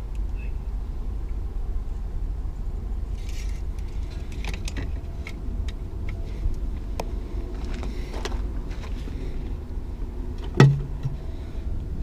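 Hands working under a car's hood: light clicks and plastic rattles as the oil dipstick goes back in and a fluid reservoir cap is opened, with one sharp snap near the end. A steady low rumble runs underneath.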